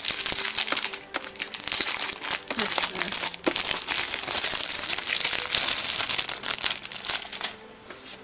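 Packaging crinkling and rustling as it is handled during unboxing, with many small clicks, dying down near the end.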